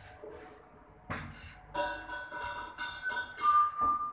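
Elevator's electronic arrival chime: a short melody of several steady notes starting just under two seconds in and ending on a held higher note, signalling that the car is arriving at the ground floor. A soft knock comes about a second in.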